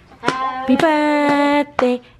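A toddler singing one long held note at a steady pitch, followed by a short sung syllable.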